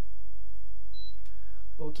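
Steady low hum, with a short faint high-pitched beep about a second in; a man says 'okay' near the end.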